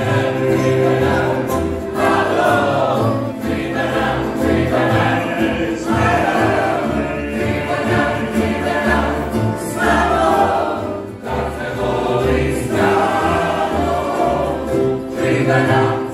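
Tamburitza orchestra playing live: plucked tamburica strings over a bass beat, with voices singing along.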